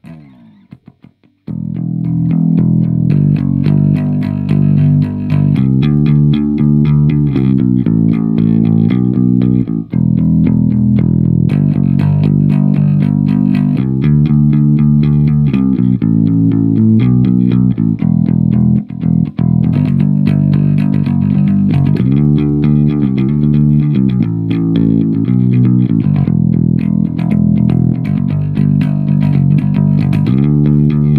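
Four-string electric bass guitar, finger-plucked, playing an unaccompanied song bass line: a steady run of low notes that starts about a second and a half in, with a couple of brief breaks.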